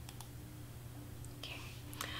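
Two faint computer mouse clicks just at the start, over a steady low hum, then a softly spoken "okay" near the end.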